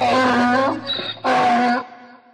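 Donkey braying: two drawn-out calls about half a second apart, with a short high squeak between them, the second call dying away at the end.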